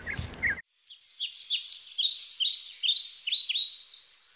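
Bird song: a quick run of high, repeated chirps, each dropping in pitch, starting about a second in after a brief silence.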